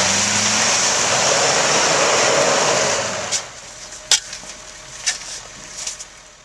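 Ford pickup's engine revving under load as it pulls a frozen utility pole out of the ice, with a loud rushing, scraping noise for about three seconds. The noise then dies away and four sharp knocks follow.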